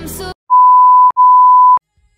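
Background music cuts off suddenly, then two loud electronic beeps at one steady high pitch, each just over half a second long, come back to back with a very short gap.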